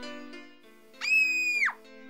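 A girl's short, very high-pitched scream that jumps up sharply, holds for under a second and drops away at the end, over soft soundtrack music.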